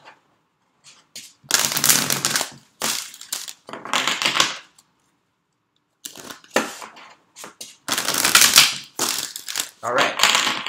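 A deck of Lightworker Oracle cards being shuffled by hand, in about six short bursts with a pause in the middle.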